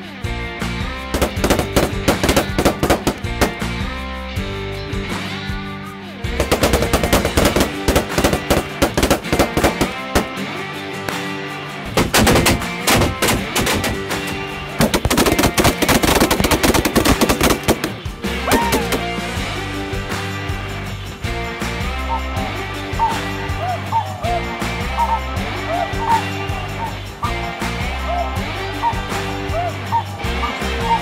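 Rapid, overlapping shotgun fire from many guns at once, in volleys through the first two-thirds, over background music. After the shooting stops, snow geese call repeatedly over the music.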